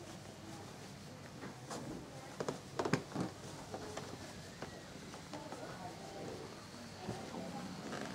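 Faint, indistinct voices murmuring in a large room, with a quick cluster of sharp knocks or clicks about two and a half to three seconds in.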